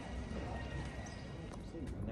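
Faint voices of people talking over a steady low rumble, with light footsteps of someone walking on paving.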